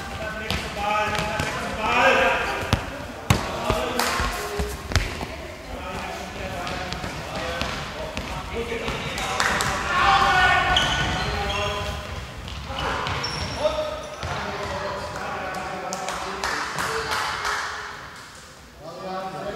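A handball bouncing and striking the floor of a sports hall, with sharp knocks scattered through, amid people's voices calling out during play.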